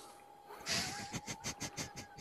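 A person laughing in a quick run of short breathy bursts, about six a second, starting under a second in, over a faint steady whine.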